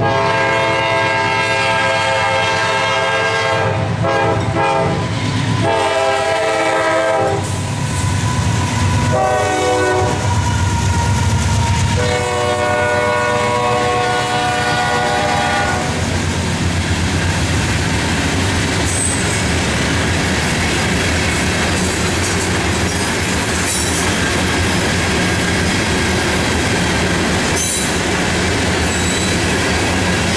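A CSX freight train's locomotive horn sounds two long blasts, one short and one long, the standard grade-crossing signal, over the diesel engines' rumble. About halfway through the horn stops and a string of open-top hopper cars rolls past with steady wheel clatter and a few faint, high wheel squeals.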